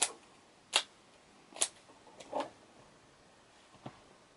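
About six short, sharp clicks at uneven intervals, made by a handheld prop being snapped and tapped during silent dancing, over faint room hiss.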